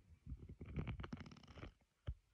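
Low, irregular grumbling and gurgling from a puppy held close, with a denser run of rapid pulses lasting about a second in the middle.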